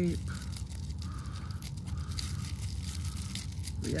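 Scissors snipping through packing tape on a small bubble-wrapped packet, with the plastic crinkling and rustling in the hand in irregular short bursts.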